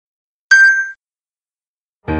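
A single short, bright ding about half a second in, ringing out in under half a second.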